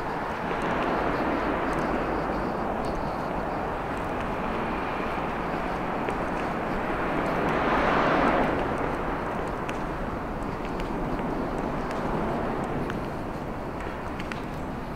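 Road traffic on an elevated highway overhead, a steady hum of passing vehicles that swells as one vehicle goes by loudest a little past halfway, then falls back.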